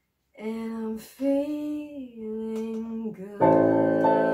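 A woman sings long held notes unaccompanied, breaking briefly about a second in and stepping down in pitch about two seconds in. Near the end a digital piano comes in with a loud, sustained chord.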